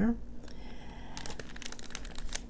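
Clear cellophane bag crinkling as it is handled, in scattered crackles from about a second in.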